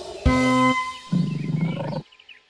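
A short held musical chord, then a lion's roar sound effect, a low rough growl from about a second in that cuts off suddenly at the end.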